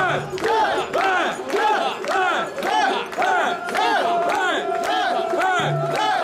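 Crowd of mikoshi bearers chanting a rhythmic call in unison as they carry the portable shrine, about two calls a second. From about halfway through, a steady held high note sounds under the chant.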